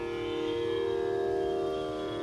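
Carnatic violin playing long held notes, stepping to a new pitch about half a second in and again near the end, with no drum strokes.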